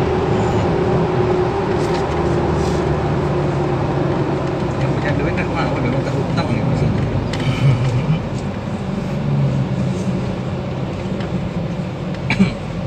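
A car's engine and tyre road noise heard from inside the cabin while driving, a steady low rumble.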